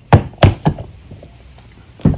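Plastic spools of Seaguar fluorocarbon leader line knocking together as they are gathered up by hand. Three quick sharp knocks come in the first second, then quieter handling.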